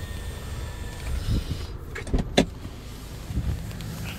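Power sunshade of a 2019 Toyota Camry XLE's panoramic roof retracting, its electric motor giving a faint steady whine that stops about a second in. Two sharp clicks follow a little past halfway.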